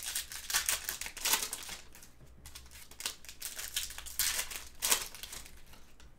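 Plastic trading-card pack wrapper crinkling and crumpling in gloved hands in irregular bursts, along with the rustle of cards being handled.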